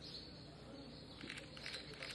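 Faint background ambience with a few brief high chirps about two-thirds of the way through.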